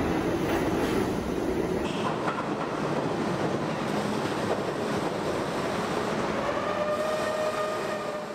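New York City Subway R32 train cars running through an underground station, a steady rumble and rattle of wheels on rails. The sound changes abruptly about two seconds in, where a second train recording begins, and a steady whine joins near the end.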